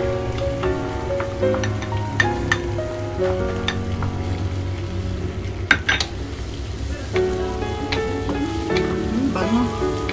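Minced garlic sizzling in melted butter and olive oil in a wok, stirred with a wooden spatula, with a few sharp knocks, the loudest about halfway through. Background music plays throughout.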